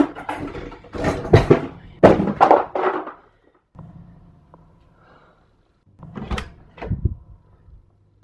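Metal cutlery clattering as a kitchen drawer is rummaged through, in a burst of loud rattles and knocks. After a quiet pause come two sharp thuds in quick succession near the end.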